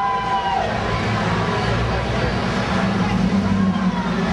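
Busy street at night: crowd chatter and a car passing close by over a steady traffic din. A held high tone fades out about half a second in, and a low engine hum rises near the end.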